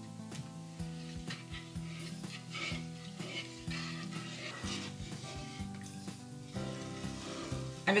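A wooden spatula stirring a thin coconut-milk curry in a nonstick pan, with repeated short swishes and scrapes as it mixes the liquid.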